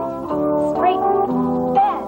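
Upbeat 1980s exercise-tape backing music with brass-like horns over a bass line.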